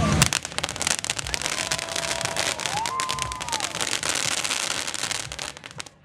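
Dense, rapid crackling of pyrotechnic spark fountains, fading out near the end.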